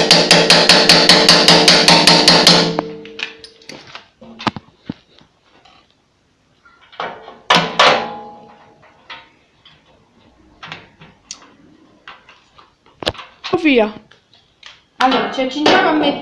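Rapid hammer taps on metal, about six or seven a second, with the metal ringing under the blows; the run stops sharply a little under three seconds in. Scattered knocks and clicks from parts being handled follow.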